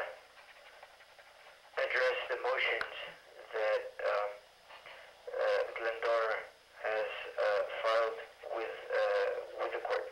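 Speech heard over a telephone line, thin and tinny with no low end. It starts about two seconds in after a short pause and runs in phrases to the end.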